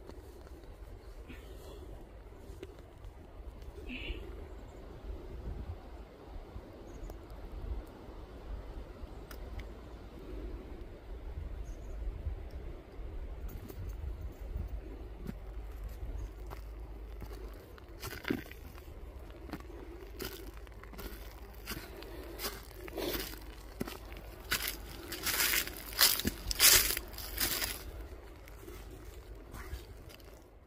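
Footsteps of a hiker on a forest trail, with leaves and twigs rustling and crunching as the hiker brushes through undergrowth. The crunching gets denser and louder in the second half, with a busy run of crackles near the end.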